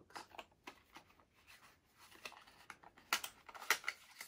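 A small cardboard box being handled and opened by hand: light rustling, scratching and clicking, with two louder crackles near the end.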